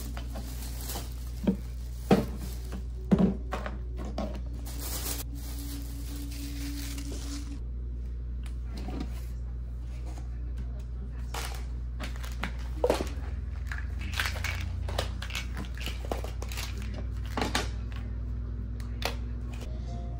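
Small objects such as plastic pill bottles and packets being picked up and set down on a wooden desk, with scattered clicks and knocks and some crinkling of plastic, over a steady low hum.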